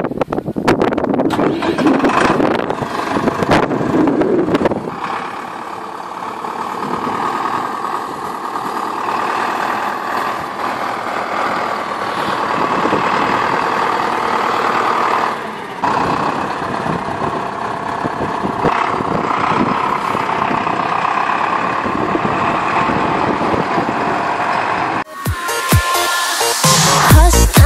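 Zetor Proxima 70 tractor's diesel engine running steadily.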